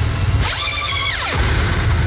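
Heavy thall-style metal track playing back: distorted electric guitar over drums, through guitar amp-sim plugins. About half a second in, an automated pitch-shift pedal sweeps a high note up, holds it, then dives it back down about a second later.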